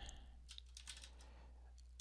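Faint computer keyboard typing: a quick, irregular scatter of key clicks.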